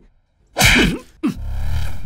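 After a short silence, a sudden loud burst about half a second in, then a falling swoop into a low rumbling boom: a dramatic sound-effect sting in a film soundtrack.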